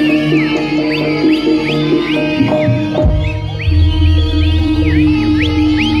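Live jaranan music from an East Javanese gamelan-style ensemble. A reedy lead melody full of quick bending, swooping notes plays over steady gong and drum tones, and a deep low tone comes in about three seconds in.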